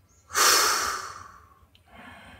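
A man taking a slow deep breath, one long breath out through pursed lips that starts about a third of a second in and fades away over about a second.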